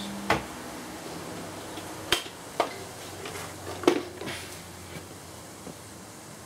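A few sharp snaps at irregular intervals over a faint steady hiss, from the terminals of a string of D-cell batteries being overcharged on 72 volts AC, where the terminals are arcing. A low hum stops with the first snap.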